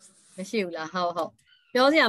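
Only speech: a woman talking over a video call, in short phrases with a brief pause near the start and another about halfway through.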